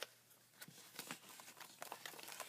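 Faint rustling and a few light clicks of paper journal pages being handled and lifted.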